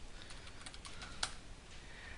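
Faint typing on a computer keyboard: a quick run of light key clicks as a short word is typed.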